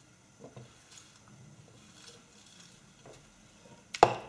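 A quiet room with a few faint, soft handling noises, about half a second, one second and three seconds in.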